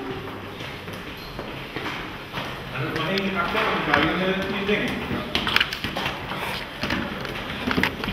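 Men's voices talking, unclear and overlapping, with scattered short taps and knocks.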